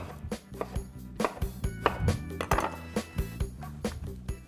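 Chef's knife chopping eggplant into cubes on a wooden cutting board: a string of irregular short knocks, over background music.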